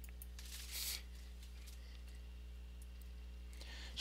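Quiet pause in narration: steady low electrical hum in the room tone, with one faint short hiss, like an intake of breath, about half a second in.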